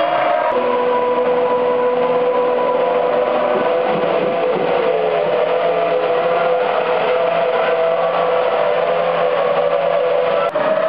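Formula One car engines running at the circuit: a steady high engine note, with one car going by and dropping in pitch about four seconds in.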